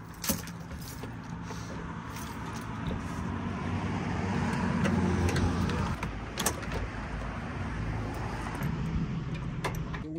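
A vehicle passing by, its noise swelling to a peak near the middle and fading away, with a few sharp metallic clicks and clinks of hand tools against the engine bay.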